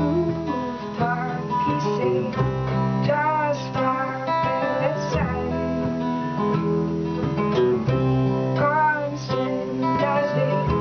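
Acoustic folk string band playing a song together: bowed fiddle melody over strummed acoustic guitar, picked banjo, upright bass and washboard.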